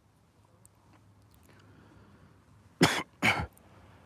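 A person coughing twice, loudly and close to the microphone, about half a second apart near the end.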